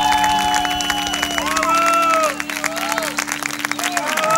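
Studio audience applauding and cheering while a band's final held note rings on, the note cutting off near the end.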